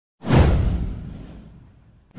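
A whoosh sound effect with a deep low boom beneath it. It starts sharply just after the start and dies away over about a second and a half.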